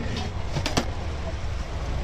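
Steady low rumble of a busy street-side food stall, with two sharp clicks about three-quarters of a second in.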